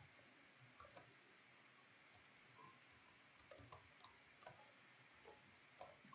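Faint computer keyboard keystrokes: sparse soft clicks, with a short run past the middle and a few more near the end, over quiet room tone.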